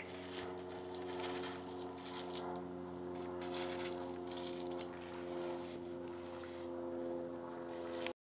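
Small stones and gravel clicking and rustling as they are scooped up and handled in gloved hands, a few faint clatters scattered through. Under them runs a steady low mechanical hum.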